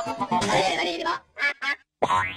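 Heavily distorted, effects-processed cartoon logo audio: garbled music with warbling, voice-like cries. About a second in it breaks into two short choppy bursts, then cuts out.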